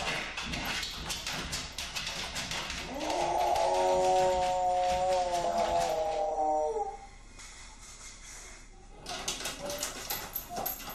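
A large dog scratching and pawing at a closed door, then one long, drawn-out howl of about four seconds in the middle, with scratching starting again near the end: separation distress at being left alone.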